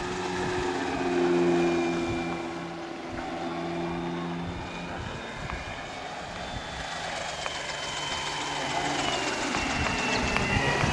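Engine and propeller of a radio-controlled model autogyro in flight: a steady engine drone that swells to its loudest about a second and a half in, eases off, then builds again toward the end as the model comes nearer.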